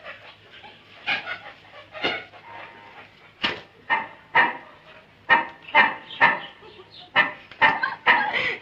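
A series of short dog-like barks, sparse at first, then about two a second and louder from a few seconds in.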